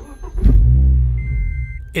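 Scion tC's 2AR-FE four-cylinder engine started by push button on a freshly flashed ECU tune: it fires about half a second in, runs briefly with a fading rumble and dies, which is normal on the first start after a flash. A steady high tone sounds during the second half.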